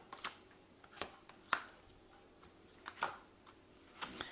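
Oracle cards being handled and drawn from the deck: about six faint, brief snaps and clicks at uneven intervals.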